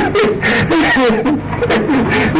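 A man laughing in short, repeated chuckles.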